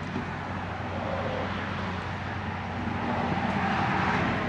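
Background road-traffic noise, like a vehicle passing, swelling gradually and loudest near the end.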